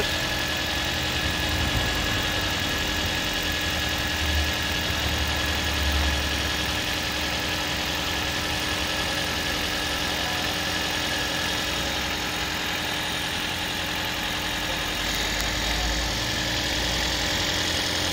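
Toyota Aqua's 1.5-litre four-cylinder petrol engine idling steadily in the open engine bay, with a thin steady whine on top. The engine is running after a coolant change so that the engine and hybrid-system coolant pumps circulate and bleed the new coolant.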